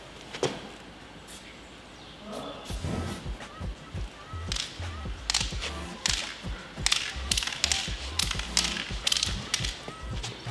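Short bursts of hiss from an aerosol spray-paint can, sprayed in quick squirts, over background music with a deep bass line that comes in about two seconds in.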